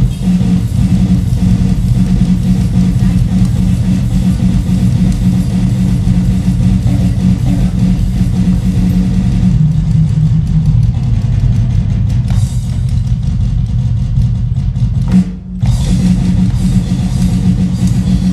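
Acoustic drum kit played with sticks in a dense, continuous groove, with a short break about three-quarters of the way through.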